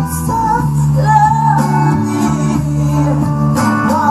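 Female vocalist singing a slow soul ballad live with a band, her voice carried over steady sustained bass notes.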